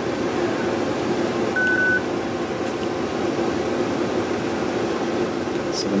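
Steady hum of ventilation running, with a single short electronic beep about one and a half seconds in.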